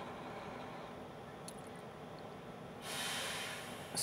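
Quiet room tone inside a car, then, nearly three seconds in, a man drawing a breath for about a second just before he speaks again.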